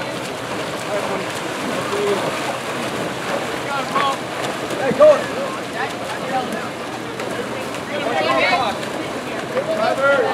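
Water splashing as water polo players swim and grapple in a pool, an even churning wash, with scattered distant shouts from players and spectators; a short shout about five seconds in is the loudest moment.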